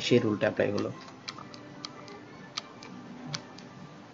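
Computer mouse clicking: about eight light, sharp clicks at irregular spacing, following a man's speech in the first second.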